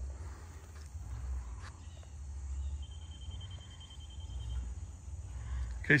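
Outdoor field ambience dominated by a low, uneven wind rumble on the microphone, with a few faint clicks. A thin, steady high tone sounds for about two seconds around the middle.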